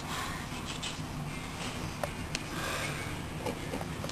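A person breathing through the nose, several short breaths, with a couple of faint sharp clicks about two seconds in.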